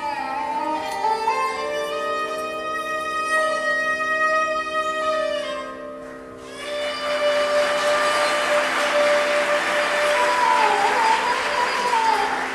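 Indian classical orchestra music: a held, gliding melody over a steady drone, then about six and a half seconds in the full ensemble of sitars comes in, dense and louder.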